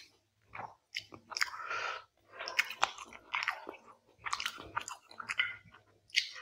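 Close-miked chewing of a hand-fed mouthful of rice and quail curry, in several bursts about a second apart, with sharp clicks of the mouth and teeth.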